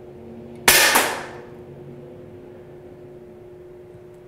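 A single shot from a UK-spec, low-power Air Arms air rifle: one sharp crack about two-thirds of a second in, dying away within half a second, over a steady low hum.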